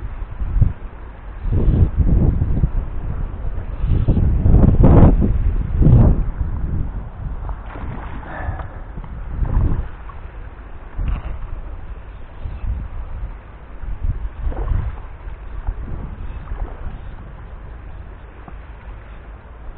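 Wind buffeting the microphone in uneven low rumbling gusts, loudest in the first few seconds, with a hooked trout splashing at the surface about halfway through and again near the three-quarter mark.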